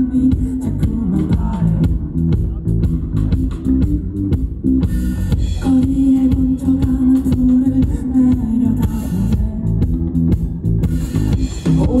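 A rock band playing live and loud through a PA: electric guitars, bass guitar and drum kit.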